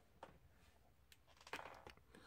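Near silence, with a few faint clicks from a plastic action figure being handled.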